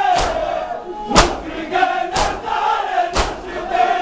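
Crowd of men performing matam, beating their chests in unison with a loud slap about once a second, while chanting a mourning chant together between the strikes.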